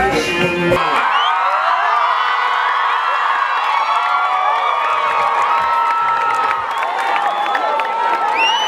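Live band music cuts off suddenly just under a second in. A concert crowd then cheers and screams, with many high voices whooping over one another.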